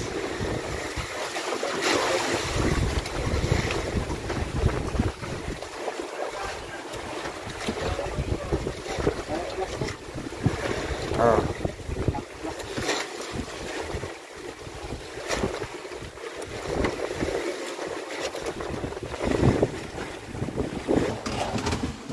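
Gusty wind buffeting the microphone over the wash of sea water against a wooden outrigger fishing boat.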